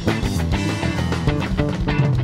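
Live band playing: drum kit, electric guitar, electric bass and keyboards together, with drum hits marking a steady beat.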